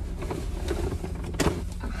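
Rummaging and rustling as clothing is pulled out of a shopping bag, with one sharp crinkle or click about 1.4 seconds in, over a steady low hum inside the parked car.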